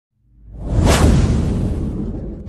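Whoosh sound effect over a deep bass rumble, part of a news-channel logo intro sting. It swells up from silence, sweeps past about a second in, then eases off.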